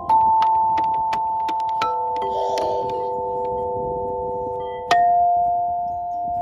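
Outdoor playground xylophone with metal bars struck with tethered mallets. The notes ring on and overlap, with a hard strike at the start, another about five seconds in, and lighter taps between.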